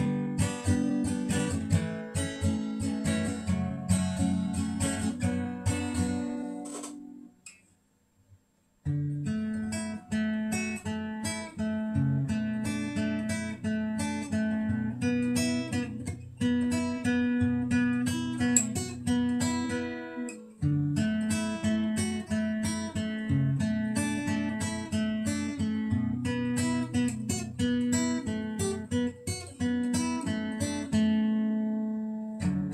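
Acoustic guitar strumming chords, breaking off to a brief silence about seven seconds in and then taking up a steady strummed pattern again.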